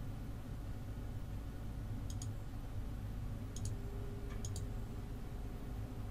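Computer mouse button clicking three times, each a quick press-and-release pair, about two, three and a half, and four and a half seconds in, over a low steady hum.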